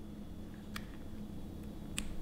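Quiet room hum with two small clicks, a faint one under a second in and a sharper one near the end, as a lubed piece is slid by hand onto a valve rocker arm's trunnion.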